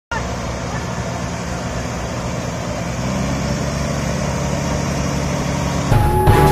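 Combine harvesters' diesel engines running steadily, growing louder about three seconds in.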